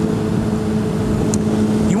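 2008 Honda CBR600RR's inline-four engine running at an even, unchanging pitch while cruising at steady speed, over a low road and wind rumble.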